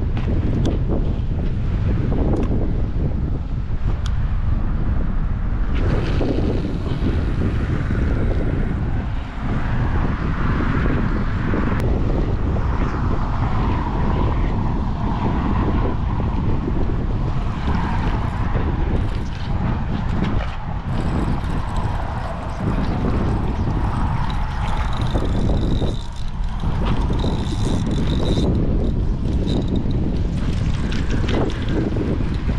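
Wind buffeting the microphone: a loud, steady rumble with no break, and a faint high note that comes and goes a few times near the end.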